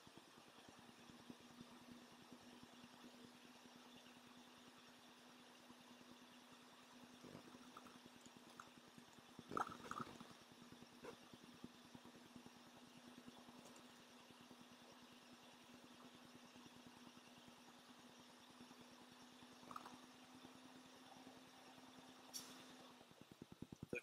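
Faint steady hum of an idling semi truck while its air compressor builds brake air pressure, with a brief noise about ten seconds in. Near the end comes a short hiss, the air dryer purge at governor cut-out, and the hum stops.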